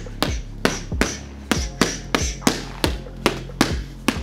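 Boxing gloves striking leather focus mitts in short combinations, about ten sharp smacks in quick groups of three and four, over background music.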